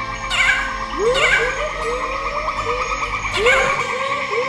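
Series of short rising animal calls, a few a second, with high chirping calls about half a second in, about a second in and near the end, over a music score of sustained tones and low bass notes.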